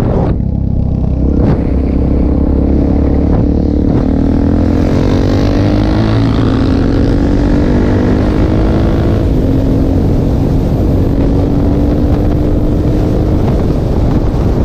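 Suzuki DR-Z400 supermoto's single-cylinder four-stroke engine under way, heard from the rider's own bike: the engine note climbs under acceleration for the first several seconds, dips near the middle, then holds steady at cruising speed, with wind rushing over the microphone.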